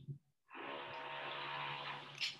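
A person's long, breathy voiced exhale, like a held sigh, starting about half a second in and lasting to the end.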